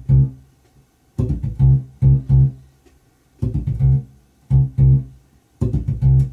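Electric bass guitar played fingerstyle: a quick muted rake across the strings, then two strong fretted low notes, a short groove phrase repeated about every two seconds. Raking and left-hand muting give the line its percussive bounce.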